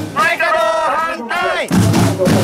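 A protest drum corps of large bass drums and snare drums beating loud, fast, hard-hit strokes, with shouted chanting over the drums twice.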